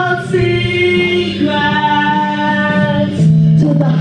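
Sung hook of a hip hop song performed live: long held notes, more than one voice singing in harmony, over a backing track with a steady bass line.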